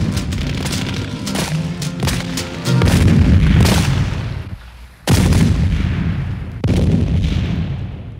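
The band's last held chord sounds under a run of sharp cracks. Then, about three seconds in, three heavy explosion booms follow one another, each dying away, and the last fades out near the end.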